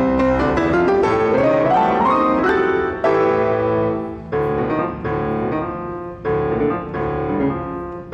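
Grand piano played fast in a Cuban-style solo piece: a rapid rising run over the first two seconds or so, then a string of sharp, accented chords about a second apart.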